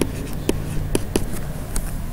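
Stylus writing on a tablet: a handful of sharp taps and short scratches as the pen strokes are laid down.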